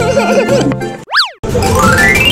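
Bouncy children's background music, broken about a second in by a cartoon boing sound effect, a quick glide up and back down. A livelier music track then starts with a rising run of notes.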